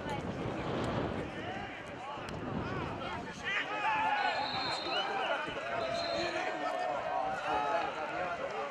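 Players and spectators shouting and calling out at a football match. About four and six seconds in, two steady whistle blasts from the referee stop play for a foul.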